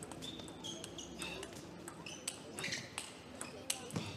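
Ambience of an indoor table tennis hall between points: a low murmur of crowd voices with scattered sharp taps and a few short, high squeaks.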